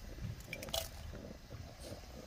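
Dried red chillies being handled in a glass bowl: a few faint crisp rustles and clicks, the clearest a little under a second in.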